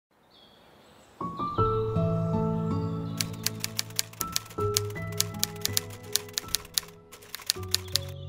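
Soft background music of sustained chords, entering about a second in. From about three seconds a rapid, uneven run of typewriter key clicks plays over it, stopping just before the end.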